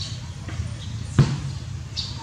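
A single sharp thump a little past a second in, over a steady low rumble.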